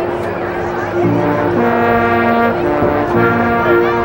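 Marching band brass playing the opening of a show: one held note, then the full band joining in on loud sustained chords about a second in, with the chords shifting every second or so.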